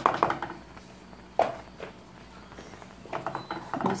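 Faint clinking and scraping of a wire whisk against a metal saucepan, stirring thick chocolate cream, with one short sharp knock about a second and a half in.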